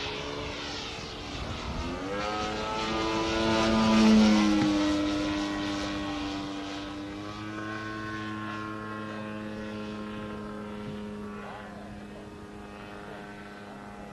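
Radio-controlled aerobatic model airplane's engine and propeller in flight. It grows louder and higher in pitch as it comes in, passes closest about four seconds in with a drop in pitch, then holds a steady note while it fades into the distance.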